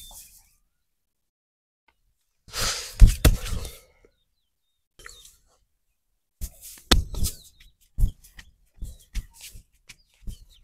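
Hand massage sounds: about a second of rubbing with two sharp slaps a few seconds in, the loudest moment, then after a pause a string of separate sharp slaps and pats on the knee and lower leg in the last few seconds.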